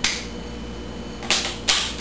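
Three sharp snapping clicks: one at the start and two close together about a second and a half in, each short and dying away quickly.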